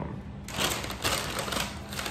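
Brown paper takeout bag rustling and crinkling in quick bursts as hands dig into it, starting about half a second in.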